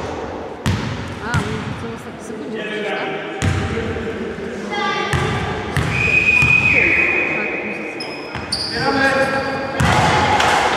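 A basketball bouncing on a sports-hall floor, a few separate thuds that echo in the hall, mixed with players' voices calling out. A high held tone lasts about a second around the middle.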